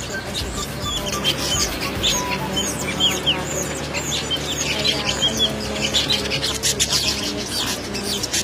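Weaver birds chattering at their nests: a dense run of quick, high chirps and calls overlapping one another, busiest from about two seconds in. Music plays steadily underneath.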